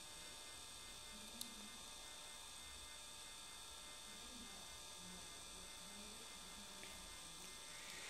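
Near silence: a faint, steady electrical hum with a few constant high tones, and a tiny click about a second and a half in.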